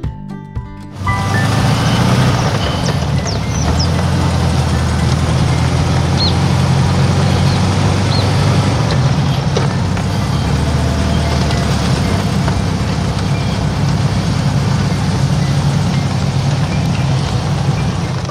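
1980 Volkswagen Fusca 1300's air-cooled flat-four engine running as the car is driven, coming in loud and sudden about a second in. Heavy wind and road rush on the outside-mounted microphone.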